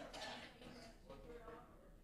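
Faint voices of people talking in a large room, too distant for words to be made out.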